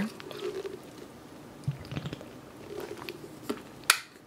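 A person drinking water: soft sips and swallows with a few small clicks, and a sharper click near the end.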